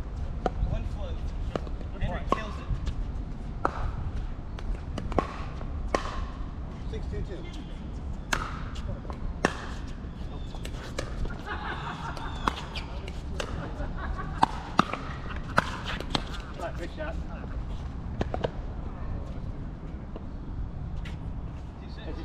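Pickleball rallies: sharp, irregular pops of paddles hitting the plastic ball, a dozen or more spread across the stretch, with voices talking in the background.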